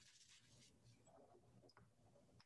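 Near silence, with a faint brief rustle near the start and a few faint light ticks later: hands handling things over the painting.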